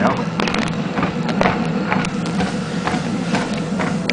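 Treadmill running with a steady motor and belt hum, and regular footfalls on the belt about three a second.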